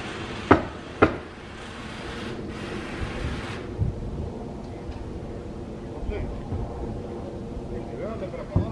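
Two sharp nailing shots on an asphalt-shingle roof as roofers fasten ridge cap shingles, about half a second apart, followed by a steady low mechanical drone.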